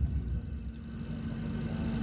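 A pause in the prayer recitation filled by a low, steady rumble with a faint hum running through it.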